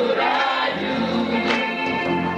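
Live gospel group singing in harmony with band accompaniment, electric bass and guitar among the instruments.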